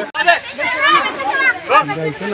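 Several people talking and calling out over one another, with a sudden break in the sound right at the start where the footage cuts.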